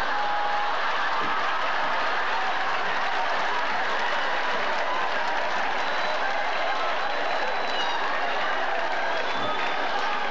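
Large audience applauding steadily in response to a comedian's punchline.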